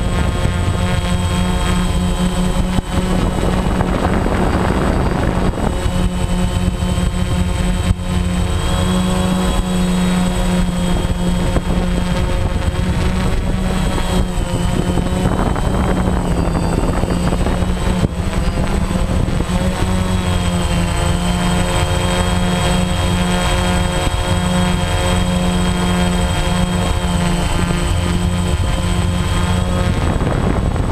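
DJI Phantom 1 quadcopter's electric motors and propellers running, a steady multi-toned drone heard close up from the camera on the aircraft. The pitch shifts slightly a couple of times as it manoeuvres, with brief rushes of noise about four seconds in and again around fifteen seconds.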